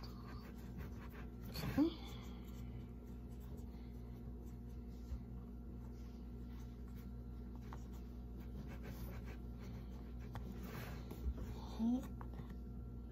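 Light scratching and rustling of hands working pie dough into place on the crust, over a steady low hum. A short rising vocal sound comes about two seconds in and again near the end.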